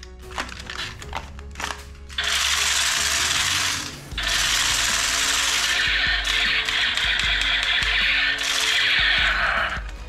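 Battery-operated toy machine gun's electronic firing sound effect: a short burst about two seconds in, then a longer rattling burst of about five seconds that stops just before the end. A few light plastic clicks come before it.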